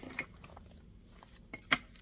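A rotary cutter slicing through foundation paper and fabric along a ruler on a cutting mat, with faint scraping and small clicks. Its blade is dulled from cutting paper. A single sharp click comes near the end.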